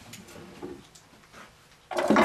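Faint wooden handling sounds: a few light knocks and scrapes as the trigger stick of a homemade wooden box trap is set.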